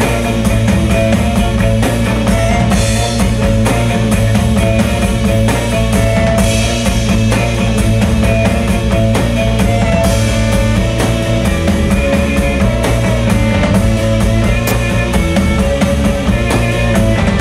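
Live rock band playing an instrumental passage: a drum kit keeps a steady beat under electric guitars, violin and keyboards.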